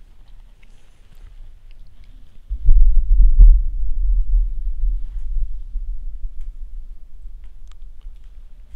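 Camera handling noise: a sudden low rumble with two knocks on the microphone as the camera is moved, fading off over several seconds.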